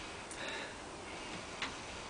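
A person sniffing faintly at the open neck of a bottle of chilli sauce, smelling it, with a light click near the end.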